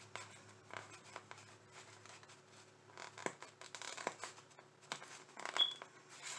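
Faint, scattered crackles and scratches of a vinyl window cling being picked at with fingernails and loosened from its backing sheet.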